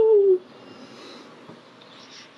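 A woman's wordless two-note vocal sound, a hummed or sung 'ooh-ooh', the second note held and dipping slightly before it stops about half a second in; after that, quiet room tone.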